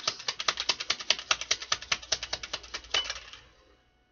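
A deck of tarot cards being shuffled by hand: a fast, even run of card clicks, about ten a second, that thins out and stops a little past three seconds in.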